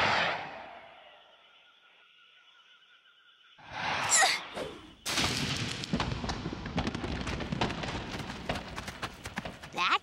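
Cartoon sound effects of a thrown ball flying off. It opens with a whoosh that fades over about a second, then a near-quiet stretch with a faint held tone and a short high sound about four seconds in. From about five seconds on comes a dense, steady rustling and crackling, like the ball crashing through bushes and leaves.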